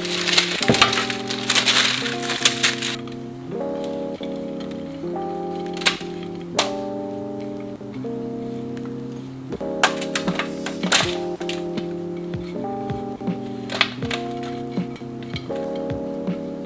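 Calm lo-fi background music with chords changing about once a second, over dry granola clusters being scraped with a spatula out of a glass bowl onto a parchment-lined tray: a crunchy rustle in the first few seconds, then scattered clicks and clinks.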